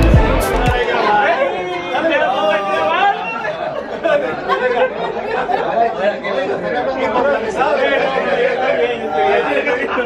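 Several people talking over one another in a room, indistinct chatter. Background music ends within the first second.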